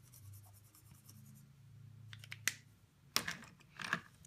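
Felt-tip marker scribbling faintly on a craft mat, then a few sharp clicks and taps as the marker is handled, over a low steady hum.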